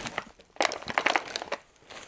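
White paper packaging crinkling and rustling as it is handled, with a run of crackles from about half a second in to about a second and a half in.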